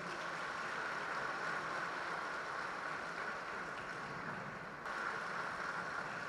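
Crowd applause, a steady even sound of many hands clapping, fairly faint.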